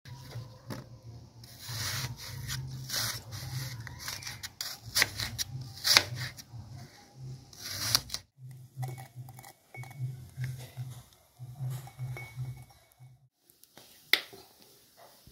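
Kitchen knife cutting a peeled apple on a cutting board: scraping slices and sharp knocks of the blade on the board, busy and loud for the first eight seconds, then lighter and sparser as the pieces are chopped small.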